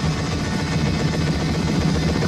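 Helicopter rotor chopping in a fast, even low beat with a steady engine drone, from a war-film soundtrack.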